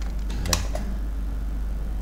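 A steady low electrical hum under the recording, with a single sharp computer-mouse click about half a second in.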